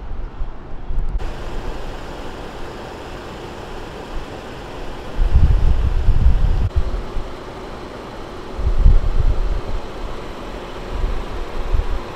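Steady city street noise, with wind buffeting the microphone in low rumbling gusts about five to seven seconds in and again around nine seconds.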